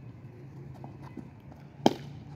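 Faint, soft footfalls of a bowler running in on artificial turf over a low steady hum, with one sharp click near the end.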